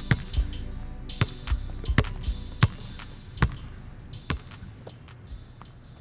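End-screen outro music with a basketball bouncing, a series of irregular thuds over a faint musical bed, fading out.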